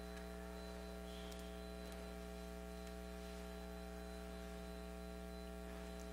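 Steady electrical mains hum in the audio feed, a low buzz with a ladder of overtones, with a couple of faint ticks.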